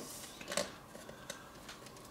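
Faint handling of a stiff card CD book: a hand moving over the pages, with a few soft clicks and taps.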